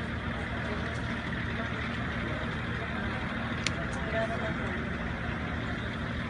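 Busy street ambience: steady traffic noise with people talking in the crowd around. A brief sharp click stands out a little past halfway.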